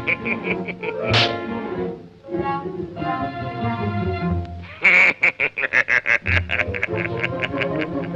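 Old cartoon soundtrack: orchestral music with a cartoon character's voice vocalising over it, and a quick run of short staccato notes about five seconds in.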